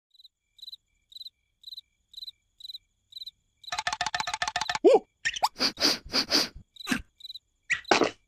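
Cricket chirping about twice a second as background ambience. About 3.5 seconds in, louder cartoon character noises and sound effects take over, with the loudest, a falling glide, about five seconds in.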